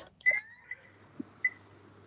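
Quiet room tone over a video call: a faint steady hum and hiss. A short faint sound with a falling pitch comes about a quarter second in, and two tiny blips follow around a second later.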